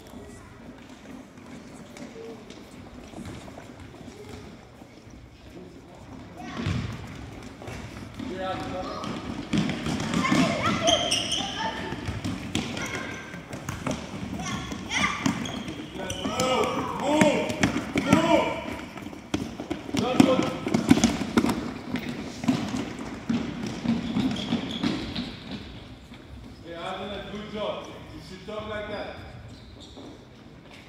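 Children's voices calling and shouting in a gymnasium, in several spells, over the repeated thuds of a soccer ball being kicked and bouncing on a wooden gym floor.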